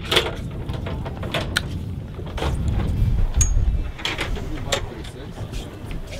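Steady low rumble aboard a boat at sea, with several short sharp knocks and clicks.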